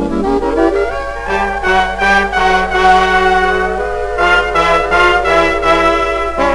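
Swing dance band playing a foxtrot intro from an old shellac record, with the brass section holding chords that change about once a second over a steady low note.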